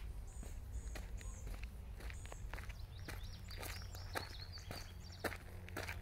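Footsteps on a gravel-and-dirt trail, about two steps a second. Small birds chirp in the background, with short high notes in the first half and a quicker run of notes about three to five seconds in.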